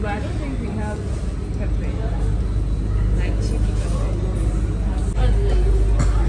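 Supermarket background: a steady low rumble with faint voices in it. The rumble gets louder about five seconds in.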